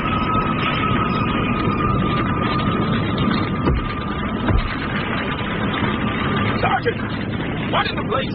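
Radio-drama sound effect of an emergency siren holding one steady high tone over a dense rumbling noise of a fire scene. The siren falls away about seven seconds in.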